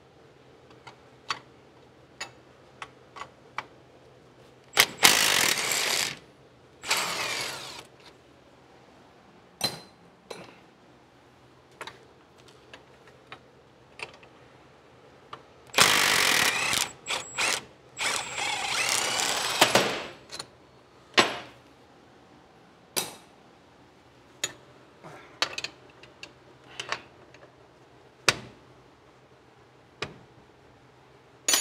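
Milwaukee M12 Fuel cordless tool running in four short bursts of one to two seconds each, spinning sockets on the bolts of a drum-brake backing plate. Between the bursts come scattered clicks and clinks of the socket and metal parts.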